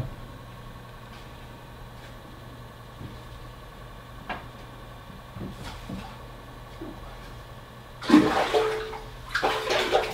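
Water splashing hard in a partly drained aquarium as a bass is scooped up in a long-handled landing net, starting about eight seconds in. Before that there is only a steady low hum and a few faint knocks.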